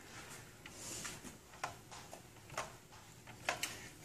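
Faint, irregular clicks and taps of a wire whisk against a glass measuring cup as a liquid egg-and-cream mixture is stirred.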